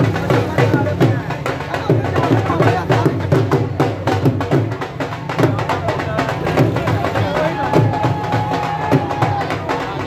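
Dhol drums beaten with sticks in a fast, driving rhythm, with a crowd's voices shouting over them.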